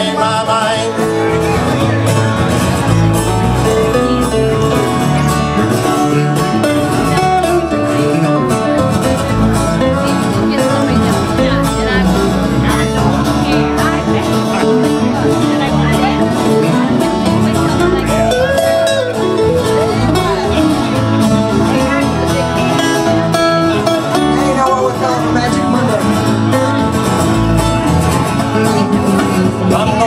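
Live country band playing, with acoustic guitar and electric bass, in a bluegrass-country style.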